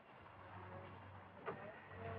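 Very quiet old film soundtrack: faint hiss and a steady low hum, with a single short click about one and a half seconds in.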